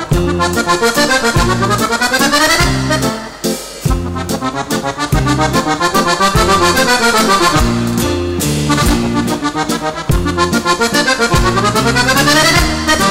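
Accordion playing a fast liscio dance solo, quick runs of notes sweeping up and then back down over a steady beat of bass notes and chords.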